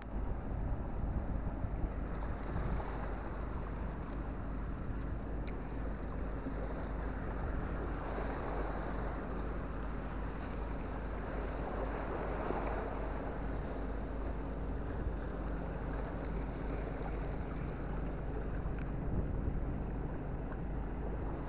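Steady wind rushing over the microphone, with the wash of the sea underneath.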